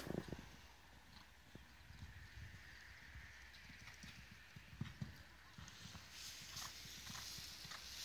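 Faint, dull hoofbeats of a horse cantering on the soft sand footing of a jumping arena, with a sharp knock right at the start.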